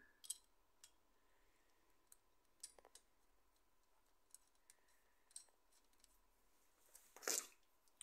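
Near silence with faint, scattered small metal clicks as a 12 mm headed bolt is fitted by hand into the timing chain guide, and a short scuffing rush near the end.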